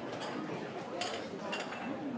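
Diners chatting at outdoor café tables, with a few sharp clinks of dishes and cutlery, about a second in and again half a second later.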